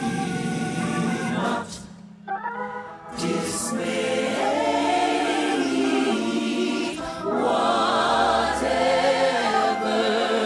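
Gospel choir singing long held chords over keyboard accompaniment. The sound drops away briefly about two seconds in, then the choir comes back in.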